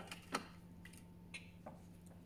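Plastic Thermomix simmering basket and lid handled over the mixing bowl: one light knock shortly after the start, then a few faint clicks, over a low hum.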